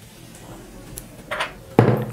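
Faint sizzling of hot oil in a small tadka pan with freshly added red chilli powder. Near the end, a metal spoon knocks into the pan as stirring begins.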